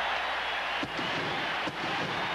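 Ballpark crowd cheering steadily on an old game broadcast, with a few faint voices breaking through. The cheering greets a game-ending walk that forces in the winning run.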